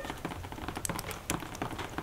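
Water dripping onto snow: a quick, irregular patter of small taps. The drips are boring holes in the snow.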